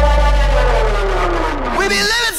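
A deep sustained rumble with a tone sliding slowly downward in pitch: a down-sweep effect in the edited soundtrack, between the song's sung lines.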